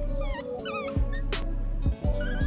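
Newborn small-clawed otter pup giving several high, wavering squeaks in the first second, over background music.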